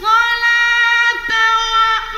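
A male reciter's voice in melodic mujawwad Quran recitation, holding one long, high note with a slight shift in pitch partway through.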